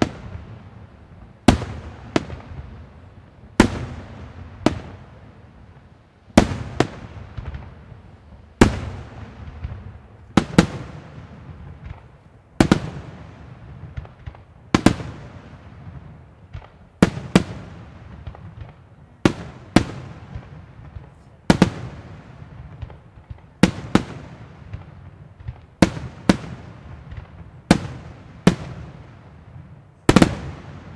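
Bruscella Fireworks aerial shells bursting one after another, a sharp bang roughly every second and often two in quick succession, each with a reverberating tail.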